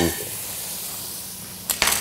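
Onions and garlic sautéing in olive oil in a stainless stockpot, a steady sizzle. A short, louder sound cuts in near the end.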